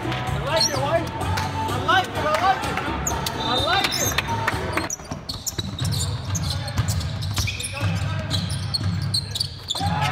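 A basketball bouncing on a hardwood court during live play, with repeated sharp knocks, among players' calls and music in the hall.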